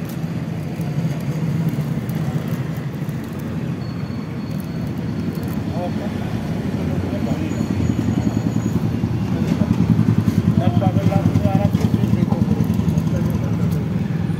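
A steady low motor drone that grows louder and pulses rapidly and evenly in the second half, with faint voices in the background.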